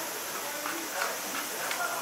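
Faint, distant voices over a steady hiss, with a few light clicks, the most noticeable about a second in.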